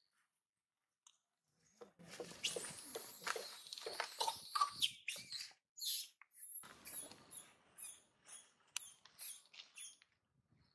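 Young long-tailed macaque screaming: a run of high-pitched screams from about two seconds in, then a string of short repeated squeals, about two to three a second.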